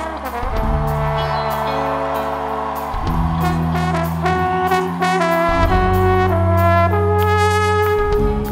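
Live ska band playing: trombone and horns hold long notes that change every second or two over bass guitar and drums.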